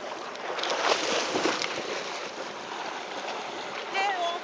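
Water splashing as a border collie bounds through shallow seawater, over the wash of small waves; loudest about a second in.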